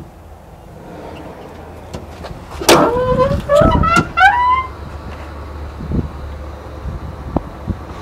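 Ford 4.6L V8 idling steadily with a low hum. About three seconds in there is a loud knock, followed by a run of short squeaks that step upward in pitch for a second or two. A few light clicks come later.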